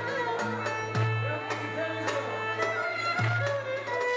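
Live traditional folk music on violin and oud: a held, wavering fiddle melody over a steady stream of plucked oud notes, with a deep low note sounding every couple of seconds.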